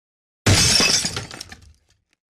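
Shattering-glass sound effect: a sudden crash about half a second in, then tinkling pieces that die away over about a second.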